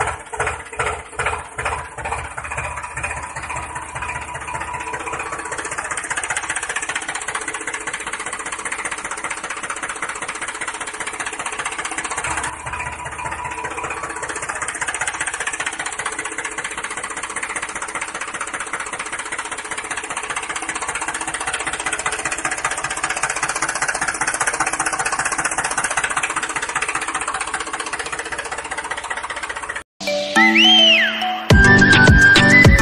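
Mini tractor engine sound chugging in slow, even beats about three a second for the first few seconds, then running faster and continuously.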